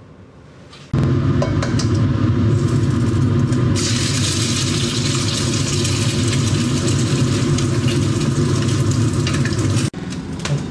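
An egg frying in hot oil in a wok, sizzling over a steady low rumble. The sizzle starts suddenly about a second in and turns louder and brighter about four seconds in.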